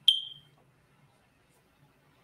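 A single short, high-pitched ping with a sharp onset, ringing out and fading within about half a second.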